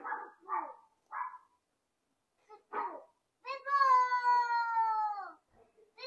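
A cat meowing: one long meow, nearly two seconds, falling slightly in pitch, about halfway through, after a few shorter calls.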